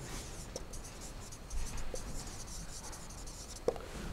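Felt-tip marker writing on a whiteboard: faint scratchy strokes with a few light taps, the sharpest near the end.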